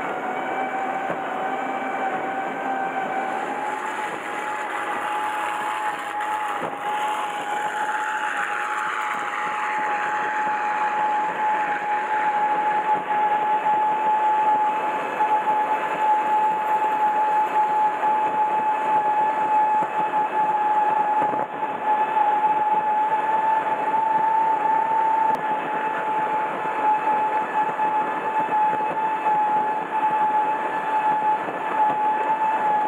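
Powerboat engine running flat out, a steady droning tone that climbs slightly a few seconds in, over heavy rushing wind and water noise on the onboard microphone.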